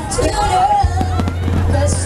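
Aerial fireworks popping and crackling, under loud music with a steady deep bass and a singing voice.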